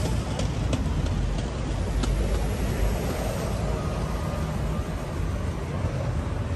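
Steady city traffic noise with a heavy low rumble.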